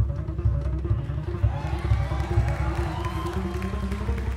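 Live jazz band playing, led by a plucked upright bass running fast low notes, with other instruments above it.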